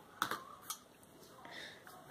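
Two light clicks about half a second apart near the start, then faint handling noise.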